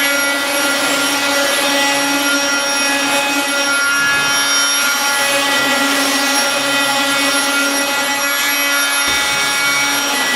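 Fein Multimaster oscillating multi-tool with a triangular sanding pad running and sanding the edge of a laminate stair nosing, a steady motor whine.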